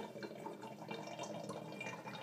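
Water with a layer of oil draining through the neck of an upturned plastic bottle, a steady trickle.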